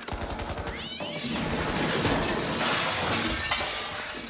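A cat yowling about a second in, with a dense noisy clatter after it, over background music.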